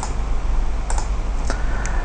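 A few light, sharp clicks of a computer mouse, spaced irregularly, over a steady low hum.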